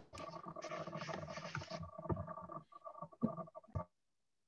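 Rustling and scraping handling noise close to the microphone, with a few sharper knocks in the second half, cutting off suddenly just before the end.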